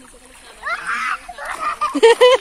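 Pond water splashing as people wade and swim in it, with voices calling out over it from about half a second in.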